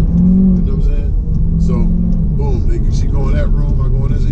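Car engine and road noise heard from inside the cabin of a Corvette while driving: a steady low drone under a man's talk.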